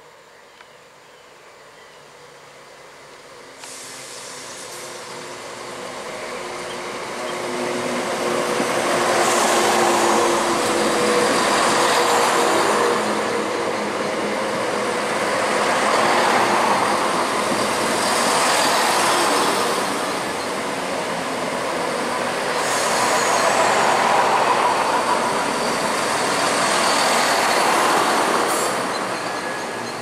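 Southern multiple-unit passenger train approaching and running past close by the platform. The rail and running-gear noise jumps up about four seconds in, rises and falls as the carriages go by, and fades as the tail clears near the end.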